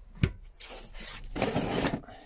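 A top-opening campervan fridge lid is handled: a sharp click about a quarter second in, then two stretches of rubbing and scraping as hands slide over the fittings.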